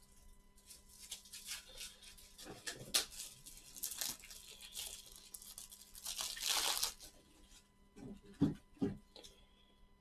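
Trading cards and their plastic packaging being handled: quiet crinkling and rustling with scattered light clicks, a longer rustle about six seconds in and two soft knocks near the end.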